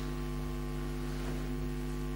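Steady electrical mains hum in the microphone and recording chain: a low, unchanging buzz with a ladder of overtones.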